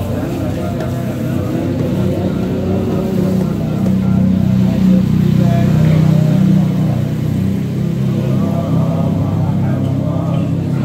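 People's voices over a steady low drone, which gets louder in the middle.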